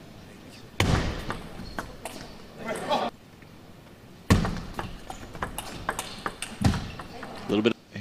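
Table tennis rallies: the sharp clicks of the celluloid ball on bats and table, broken by three short bursts of crowd noise after points, with a brief shout from a player near the end.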